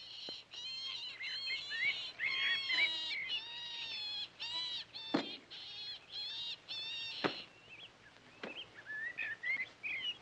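A rabbit caught in a spring trap crying out in distress: a fast run of short, high, shrill squeals. The cries stop after a sharp snap about seven seconds in, as the injured rabbit is put out of its misery; faint chirps follow.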